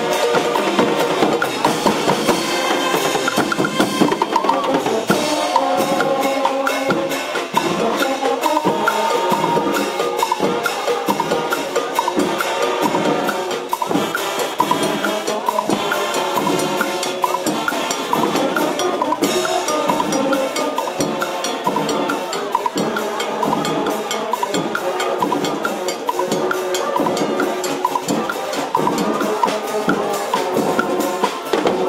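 Brazilian fanfarra marching band playing: brass horns carry a melody over a steady, dense beat from the marching drum line of bass drums and snares.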